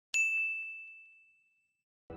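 A single bright notification-bell ding, struck once just after the start and ringing out as one clear tone that fades away over about a second and a half.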